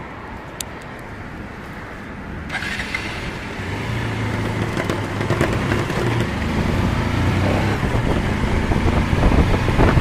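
Motorcycle pulling away and accelerating. A quieter spell gives way, about three seconds in, to an engine note that grows steadily louder and rises slightly in pitch over a swelling rush of road and wind noise.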